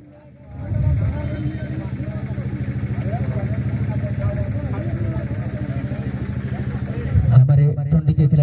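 A small motorcycle engine running steadily close by, with a fast, even pulse; it starts about half a second in and stops shortly before the end.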